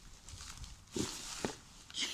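Thin plastic shopping bag rustling as it is lifted and handled, with a louder rustle about a second in.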